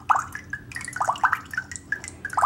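Timer picker wheel of the Thunderspace app on an iPhone clicking as it is scrolled: a quick, irregular run of about ten short, pitched clicks, played through the phone's speaker.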